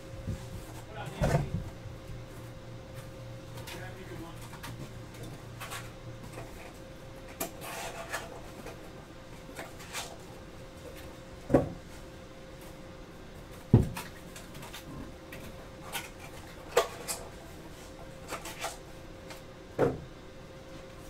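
Scattered knocks and thuds of objects being handled and set down on a tabletop, the loudest near the start and about midway. Under them is a steady electrical hum, with a lower hum that stops about a third of the way through.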